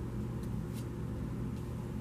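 Steady low hum of room noise, with two faint light ticks about half a second in as tarot cards are handled and laid down on a cloth-covered table.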